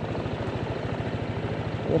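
Small motorbike engine running steadily at low speed, with an even, fast low pulsing.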